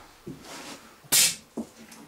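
A short, sharp hiss of compressed air about a second in as an air-line quick-release coupling is pulled off, followed by a faint knock of the hose fitting being handled.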